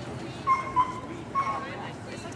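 Samoyed whining: three short, high, steady-pitched whines, the first two close together about half a second in and the third about a second and a half in.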